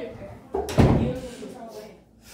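A door shut hard: one heavy slam about half a second in, ringing briefly in the room, over students' chatter.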